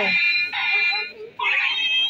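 Light-up toy sword's motion-sensor sound effects: three electronic tones of about half a second each, set off as the sword is moved.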